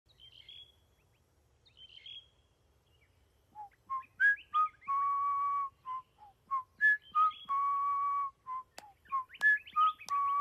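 A cartoon character whistling an idle tune: short notes sliding up and down, with a long held note at the end of each of two phrases. Two faint high chirps come first.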